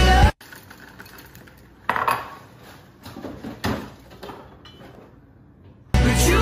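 Music cuts off suddenly, then a metal spoon clinks against a glass jar and mug a few times, the loudest clinks about two and three and a half seconds in.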